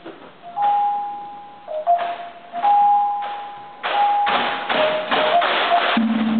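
Gong-based Philippine dance music, kulintang-style: single pitched gong notes ringing about a second each, one after another, among sharp percussive clacks that come thicker in the last two seconds.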